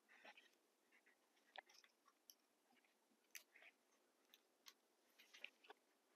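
Near silence, broken by about half a dozen faint, short clicks and taps as a motorcycle carburetor body is handled and turned over on a work tray.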